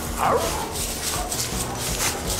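A dog gives one short, rising-and-falling yip about a quarter of a second in.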